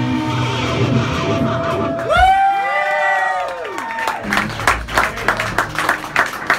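A live rock band's closing notes ring out, with a loud sliding, bending note about two seconds in. The audience then cheers and claps.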